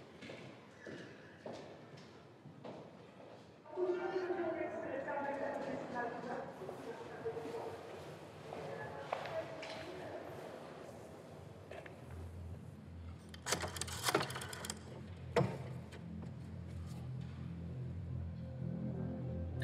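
Footsteps echoing in a school corridor, then a hubbub of indistinct children's voices in a large hall. A sharp clatter comes about three-quarters of the way in, and a low hum enters shortly before it.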